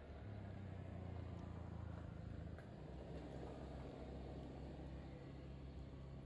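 Faint low engine hum, strongest for the first two seconds or so and then steady.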